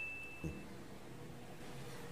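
Tail of a single high, bell-like ding sound effect ringing out and fading within the first half second, followed by quiet room tone with one faint low bump.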